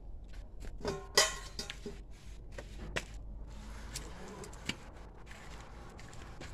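Handling noise of a hand-held phone moving through the vine foliage: scattered sharp clicks and light rustling, with a short pitched sound and the loudest click about a second in.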